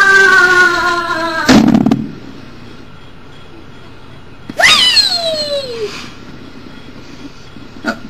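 A girl's long held scream, its pitch slowly sinking, breaking off about a second and a half in with a short breathy burst. About halfway through comes a short high vocal squeal that swoops up and then slides down.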